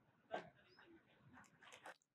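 Near silence: faint room tone, with one short faint sound about a third of a second in and a few faint clicks near the end.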